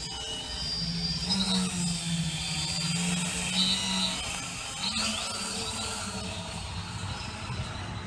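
Home-built quadcopter's four 1400 kV brushless motors and propellers buzzing with a high whine as it hovers and climbs overhead, the pitch wavering with throttle changes. The sound grows thinner after about five seconds as the quadcopter moves farther away.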